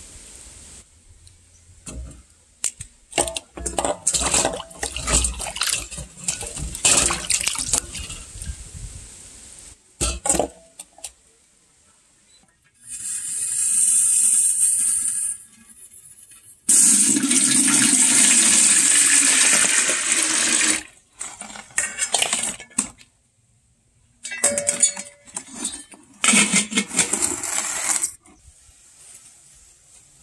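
Hands scrubbing and rinsing bael fruits in a steel bowl of water, with irregular splashing and sloshing. Later comes a steady hiss for a couple of seconds, then a loud steady rush of water poured into a metal kettle for about four seconds, and a few knocks and clatters near the end.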